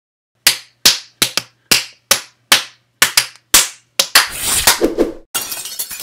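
Cartoon fight sound effects: a rapid series of sharp smacks, about three a second, then a denser flurry of hits. It ends in a noisy crash near the end.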